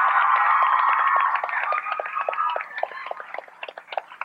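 Studio audience applauding and cheering, with high-pitched cheering voices over dense clapping; the cheering fades after about a second and a half and the clapping thins out toward the end.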